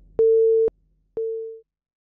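Telephone busy tone after the call cuts off: two steady beeps about half a second long, the second fading away.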